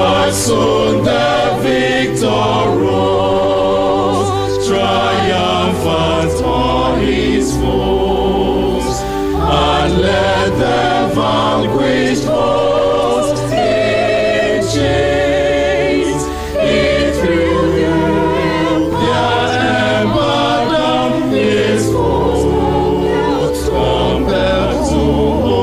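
A group of voices singing a slow hymn verse together in harmony, with held low notes sounding underneath.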